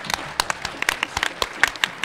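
Audience applauding: many hands clapping at once in a dense, irregular stream of claps.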